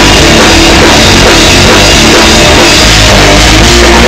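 Punk rock band playing an instrumental passage live: distorted electric guitar over a full drum kit, very loud and even, with no vocals.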